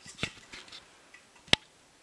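Two short sharp clicks as a new metal plastering hand tool is handled, a light one just after the start and a louder one about one and a half seconds in.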